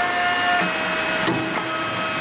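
Automatic steel cable cutting machine running: its feed motors whine in steady tones that jump to new pitches as the rollers drive the cable. There is a sharp click a little over a second in, from the cutting blade.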